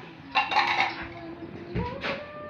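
A brief clatter of a metal utensil against a cooking pot, about half a second in.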